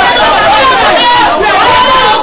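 Several people praying aloud at once into microphones, their loud, fervent voices overlapping without a break.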